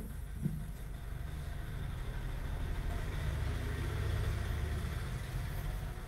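A low, steady background rumble with no speech, swelling a little in the middle and easing off again.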